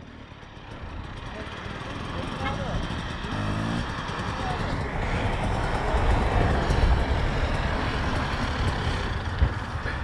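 Dirt bike engines running close by, growing steadily louder over the first half and then holding, with one engine briefly revving up through its gears a few seconds in.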